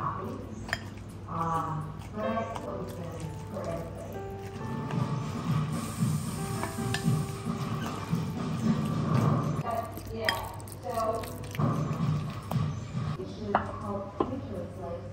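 Background music with a wooden spoon stirring a soft chopped-egg mixture in a glass mixing bowl, giving a few light clinks as it knocks the glass.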